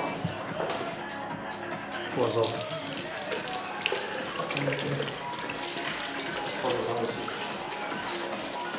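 A water tap running into a washbasin, starting about two seconds in, over background music, with a voice heard now and then.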